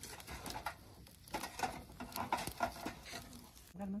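Open wood fire in a fire pit crackling, with irregular small pops and snaps.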